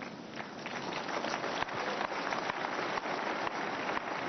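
Large congregation applauding, a dense patter of many hands clapping that builds slightly in the first second and then holds steady.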